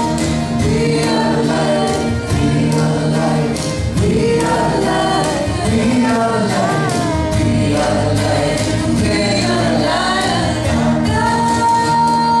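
Live acoustic music: a woman sings a melody over steadily strummed acoustic guitars.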